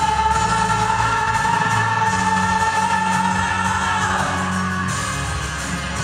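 A man singing a song into a microphone over instrumental accompaniment, holding one long note that fades out about four seconds in while the accompaniment plays on.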